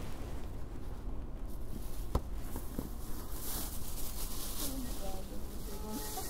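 Faint, indistinct murmured voices with handling noise, and a sharp knock about two seconds in followed by a softer one.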